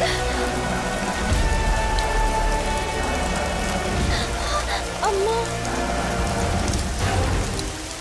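Water spraying and falling heavily, a steady rain-like hiss of drops, which cuts off abruptly at the end.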